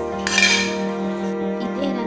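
Stainless steel cookware clinks once sharply about a quarter of a second in and rings briefly, followed by a few lighter metal taps, over steady background music.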